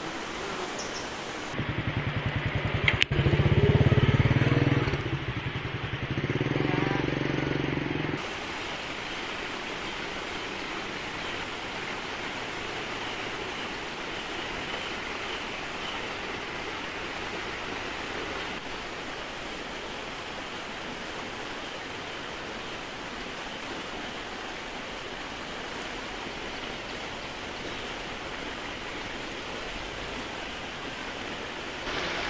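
A vehicle engine passing close by, starting about a second and a half in, loudest around three to four seconds and gone by about eight seconds. Under and after it, a steady rushing noise of flowing river water.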